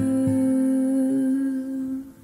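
A singer holds the song's final note steadily, with a soft acoustic guitar note ringing underneath. The sound tapers off near the end.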